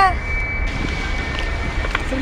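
Wind buffeting the camera microphone outdoors: a steady low rumble with a thin, steady high whine above it.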